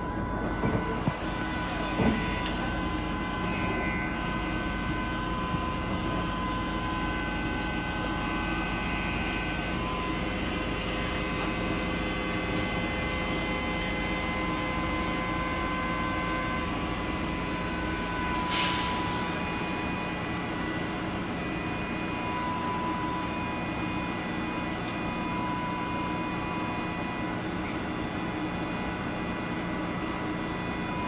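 Older MBTA Red Line subway car running through the tunnel: a steady rumble with whining tones from the running gear. About two-thirds of the way through there is a short hiss.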